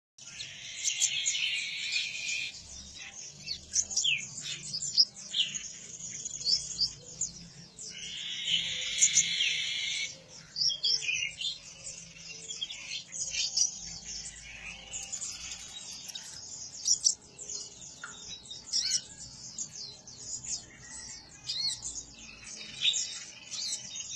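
Caged kolibri ninja sunbird calling in a string of quick, sharp, high chirps and clicks (the clicking 'cetrekan' call). Two longer buzzy chattering bursts come near the start and again about eight seconds in.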